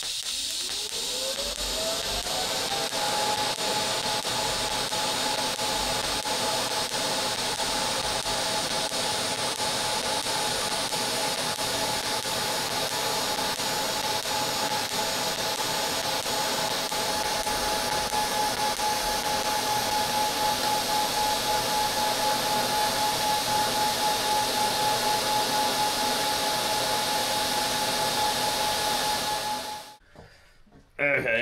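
TIG welding arc on a rotating stainless steel tube: a steady hiss, with a whine that rises in pitch over the first three seconds and then holds steady. The arc cuts off suddenly near the end.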